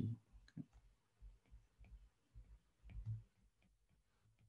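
Faint, scattered clicks and taps of a stylus writing on a tablet screen, with a slightly louder low bump a little after three seconds in.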